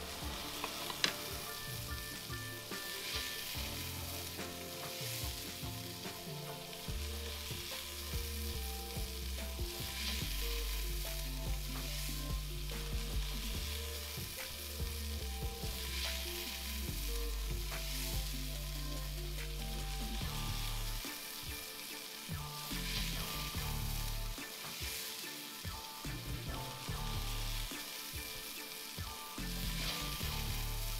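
Flour-coated chuck steak pieces sizzling steadily as they brown in hot oil in a cast-iron pot. Now and then the sizzle flares louder as pieces are moved in the pot.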